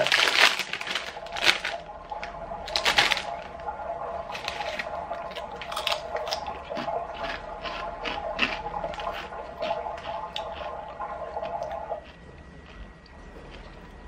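A foil crisp packet crinkling as it is pulled open, then crisps being crunched in the mouth. Under it runs a steady bubbling sound from a baby monitor, a few held tones that cut off about two seconds before the end.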